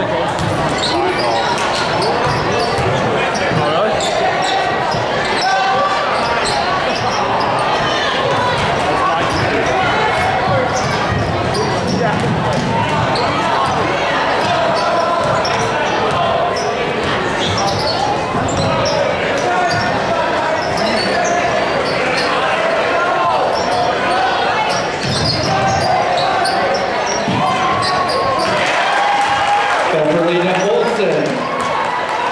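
Spectators' chatter filling a gymnasium during a basketball game, many voices overlapping, with a basketball bouncing on the hardwood court at intervals.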